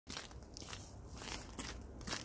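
Faint crunching footsteps in snow, a few soft irregular steps.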